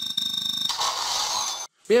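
Video game sound effects from a smartphone's speaker on a mission-results screen: a rapid ticking tally with a steady high tone for under a second, then a brief hissing whoosh that cuts off suddenly.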